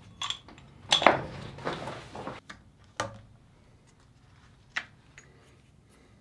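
Metal tool clinking and scraping on a brass pipe fitting threaded into a plastic water-filter head: a cluster of clinks in the first two seconds or so, then single sharp clicks about three seconds in and near five seconds.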